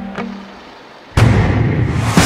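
Background music: a beat fades into a short lull, then a sudden heavy hit a little over a second in opens a louder, fuller section.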